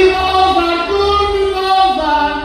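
A solo voice singing a verse of Portuguese desgarrada (cantares ao desafio) in a high register over a light instrumental accompaniment. The notes are long and held, with a slide down near the end.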